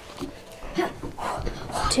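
Dull thuds of feet landing on a wooden floor during star jumps, a few of them spread across the two seconds, with breathing and a sigh near the end.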